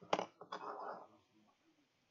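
A sharp click of a pen being handled on the desk, followed by a short rustle that fades away.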